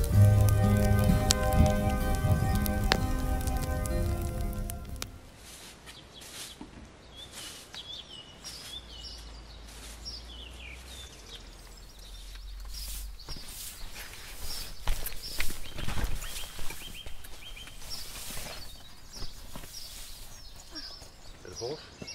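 Instrumental music that stops about five seconds in. It is followed by birds singing in a forest and the irregular scraping strokes of a straw broom sweeping the ground.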